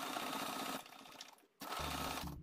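Sewing machine stitching in short runs: it runs for under a second, stops, and starts again near the end.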